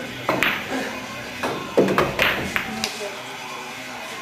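A pool shot: the cue tip strikes the cue ball, followed by a few sharp clicks of billiard balls colliding. Laughter sounds over it, about half a second in and again around two seconds in, with background music throughout.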